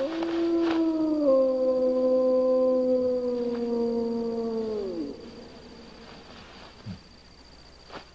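A wolf howling: one long howl of about five seconds that rises at the start, holds and slides slowly lower, then drops away.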